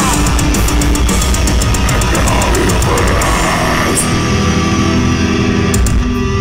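Heavy metal band playing live: distorted guitars over fast, driving drums and cymbals, which about four seconds in give way to a held, ringing chord as the song winds down.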